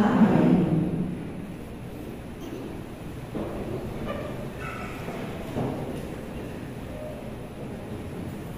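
A priest's sung prayer ends on a last note that dies away in the church's echo within about a second. Low room noise follows, with faint murmurs and movement as people settle.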